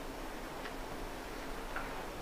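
Quiet room tone in a pause between speech, with two faint ticks about a second apart.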